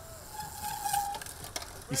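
Faint steady hiss of outdoor course ambience, with a faint held tone in the first half.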